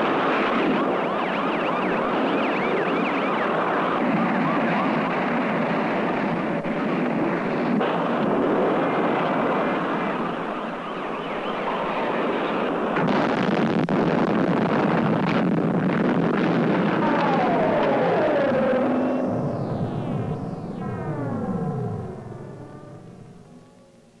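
Loud, dense noise of a fire scene with sirens wailing through it; near the end a siren winds down in a long falling pitch and the sound fades out.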